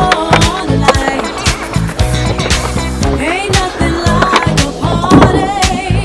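Skateboard rolling on concrete and its trucks grinding a ledge, with a rougher scrape near the end, under loud rap music with a steady beat.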